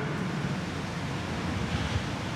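Steady hiss of background noise in a pause between spoken answers, with no distinct event.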